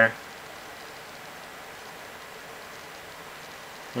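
Faint, steady hiss of room tone with no distinct events, just after the last word of a sentence trails off.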